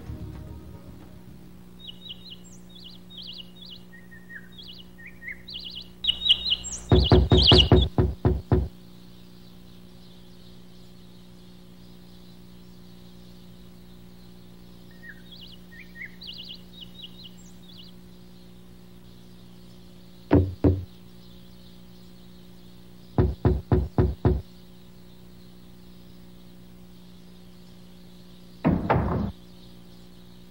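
Cartoon sound effects: birds chirping, and runs of sharp knocking on a door. First comes a fast run of about eight knocks, then two knocks, then five, and a short run near the end. A faint steady hum lies under it all.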